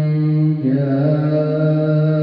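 A man reciting the Qur'an in the melodic tilawah style into a microphone, holding long sustained notes. About half a second in he briefly breaks and moves to a new held note.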